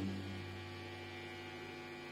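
The last electric guitar chord dies away at the start, leaving a steady mains hum from the amplified guitar rig.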